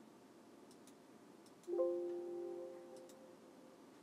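A short electronic notification chime, several steady tones sounding together, starting suddenly about halfway through and fading over about a second and a half. A few faint clicks come before and after it.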